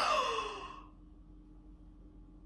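A woman's long sigh-like vocal exclamation, sliding down in pitch and fading out within about a second, followed by faint steady room hum.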